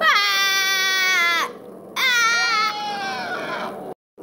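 A person's high-pitched screaming cries: two long wails of about a second and a half each, the first dropping in pitch as it starts and then holding, the second wavering and then fading.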